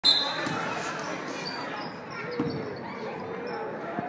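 A basketball being dribbled on a hardwood gym floor, a few separate thumps ringing in the large hall, over a background of voices.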